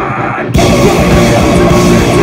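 Live metalcore band playing loud, with distorted guitars and a drum kit. For a moment the cymbals and drums drop out and only the lower guitar notes carry on, then the full band comes back in abruptly about half a second in.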